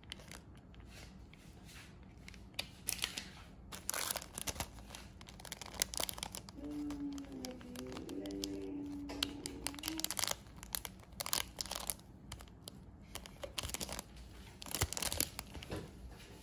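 Plastic seasoning sachets from an instant cup ramen being handled and torn open: repeated crinkling and ripping of the thin packet film in short bursts, with a faint brief voice-like tone in the middle.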